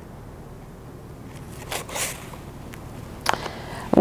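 Thin perm end papers rustling as they are handled and pulled from their small box: a soft papery rustle about two seconds in, a small click, and another short rustle near the end.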